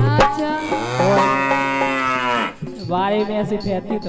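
A male singer's voice through a microphone and PA, in short sung phrases with one long drawn-out note of about a second and a half near the middle that bends down at its end.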